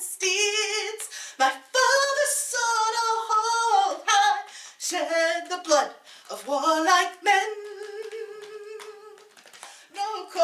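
A woman singing a ballad unaccompanied in a small room, holding one long note for about two seconds near the end.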